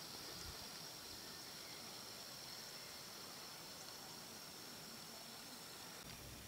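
Faint steady hiss of background noise, with no distinct sound.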